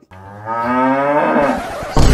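A cow mooing: one long call lasting about a second and a half.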